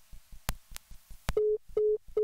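Two short electronic beeps at one steady mid pitch, about 0.4 s apart, like a telephone busy signal, beginning about 1.4 seconds in. Before them come three sharp clicks, over a faint low pulse repeating about five times a second.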